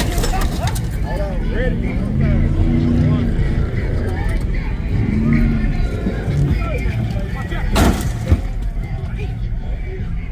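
A crowd of men shouting and straining as they push a tipped-over small SUV back upright, with a steady low rumble underneath. Near the end there is a loud thump and a sharp knock as the truck drops back onto its wheels.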